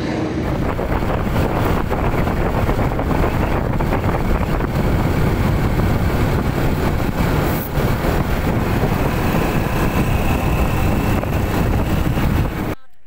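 Wind rushing and buffeting over the microphone on a moving motorcycle, a loud, steady rumble with road and engine noise mixed in.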